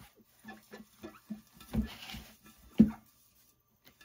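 Hand and damp paper towel wiping the inside of a large glass cylinder vase: faint rubbing scuffs and light taps on the glass, with two louder thumps of the vase knocking on the table.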